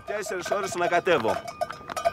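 Bells on pack mules ringing in an uneven jangle of short clinks, taking over about halfway in as a man's voice stops.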